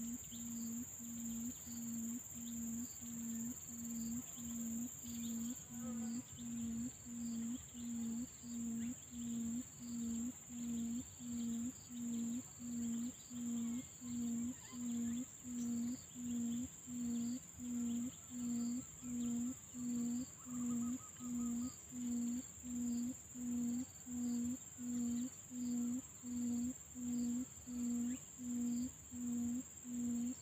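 Quail (puyuh) calling: a long, even run of low hoots, a little more than one a second, over a steady high whine of insects.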